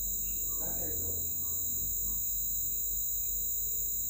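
A steady, unbroken high-pitched whine in the background over a low hum, with a faint murmur of voice about a second in.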